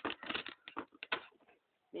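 Cardboard box being handled: a rasping rustle, then several light taps and clicks, then quiet near the end.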